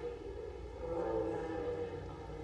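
A small congregation softly reciting a prayer response together in unison, over the low hum of the chapel.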